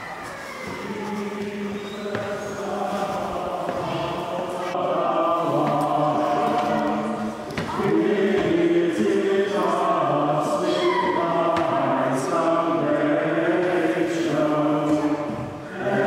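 Choir singing slow, sustained chords that grow louder over the first several seconds, with short dips between phrases.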